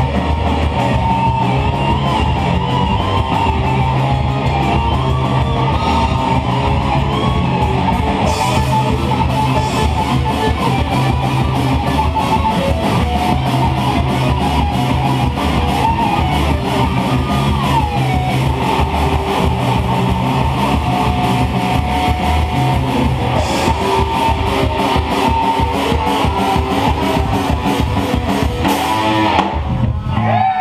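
A live heavy metal band playing: distorted electric guitars and a Jackson bass guitar over fast drumming, with guitar pitch bends in the middle. The song ends on a final crash near the end.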